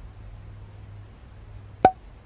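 A faint, steady low room hum, then a single sharp click near the end.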